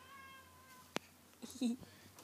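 A baby's faint, high, thin squeal lasting just under a second, followed by a single sharp click.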